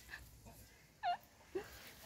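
One brief, high-pitched call about a second in that dips and then rises in pitch, over faint outdoor background.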